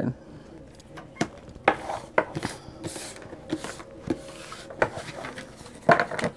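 Cards being handled on a tabletop: scattered light taps and clicks, with two short rustles about halfway through.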